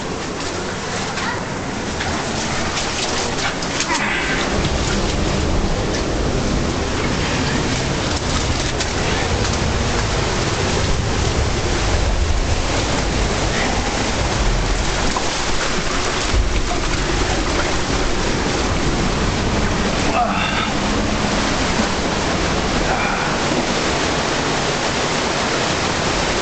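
Ocean surf breaking and washing into a sea cave: a steady, loud rush of water with a deep rumble.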